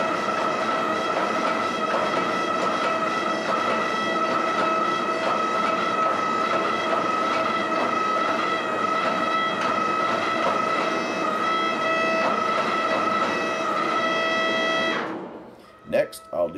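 Hydraulic forging press running: a steady whine with overtones over a noisy hum while hot steel sits between its dies. The sound fades out near the end.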